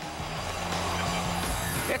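TV sports-broadcast transition sting: music with a whooshing sweep, and a low thud about one and a half seconds in, as a graphic comes in.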